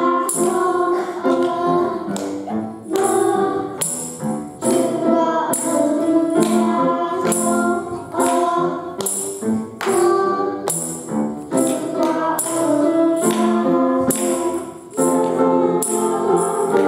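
Children singing a praise song together in Taiwanese into microphones, over an instrumental accompaniment with a steady beat.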